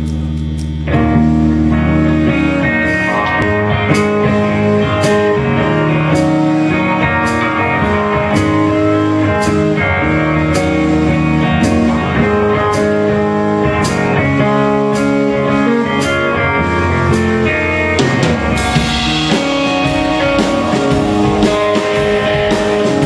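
Live rock band playing an instrumental passage on electric guitar and drum kit. A held guitar chord opens, and the full band comes in about a second in, with cymbal strokes about twice a second. The cymbals grow brighter and washier near the end.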